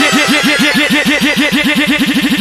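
Dubstep track: a gritty synth note repeated fast, each hit bending up then down in pitch, about nine a second, quickening near the end as a build-up.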